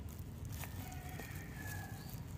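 Gloved hands squeezing and mixing sticky flattened green rice with mung beans and grated coconut in a bowl, giving soft, low handling noise. From about halfway through, a faint, thin, drawn-out high call of about a second sounds in the background.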